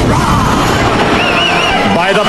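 Break in a deathstep (heavy dubstep) track: the drums drop out, leaving a wash of noise under high, quavering pitched sounds that waver up and down, like a sampled cry.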